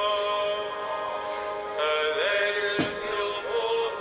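A hymn sung over held instrumental chords, with sustained notes that change about two seconds in, heard through a broadcast with the treble cut off. A single sharp click sounds near the three-second mark.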